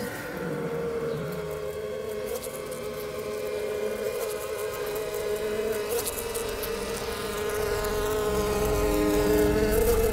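Bee buzzing, a steady unbroken drone. A low rumble comes in and grows near the end.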